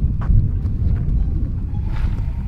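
Low, unsteady rumble of wind buffeting an outdoor microphone, with a few faint clicks near the start.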